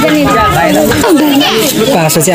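Several people's voices talking over one another at once.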